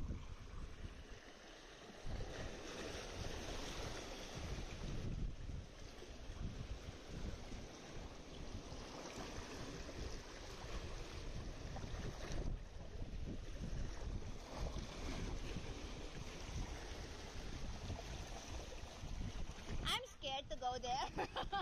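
Seawater surging and lapping against rock walls in a narrow channel, with wind buffeting the microphone in low gusts.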